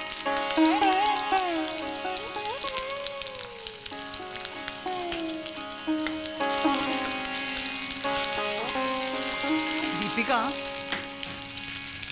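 Food frying and crackling in a steel kadhai on a gas stove, with a spoon stirring it. Background music runs underneath: a melody sliding up and down over held tones.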